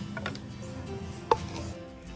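Soft background music, with one sharp wooden clack a little over a second in as wooden kitchen utensils knock together while being handled.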